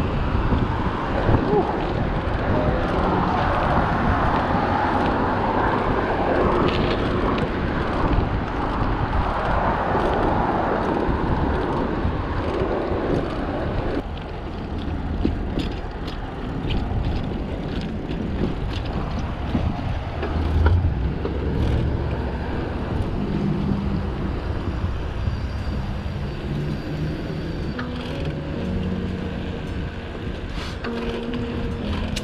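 Wind rushing over a chest-mounted action camera's microphone during a bicycle ride, with tyre and road noise and car traffic. About halfway through the rushing eases and sharp clicks and rattles from the bike come in, with a thump about two-thirds of the way in.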